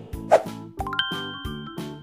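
A bright chime sound effect comes in about halfway through as a quick run of rising notes, which then ring on together. It plays over background children's music with a steady beat.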